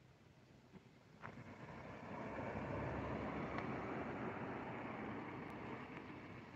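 A car's engine and tyres running nearby: the sound builds up over about a second, after a single click, and then holds steady.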